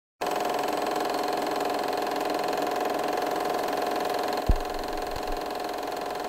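Reel film projector running: a steady, fast mechanical rattle of the film-advance mechanism. A short low thud comes about four and a half seconds in.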